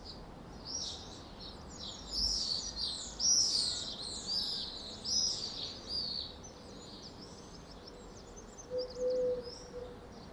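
Swallows and other small birds chirping and twittering in a dense run of short high calls, busiest in the middle, over a faint steady background hum. A brief low steady tone sounds near the end.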